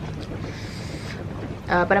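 Steady low rumbling background noise like wind on the microphone, with a brief soft hiss about half a second in, during a pause in speech.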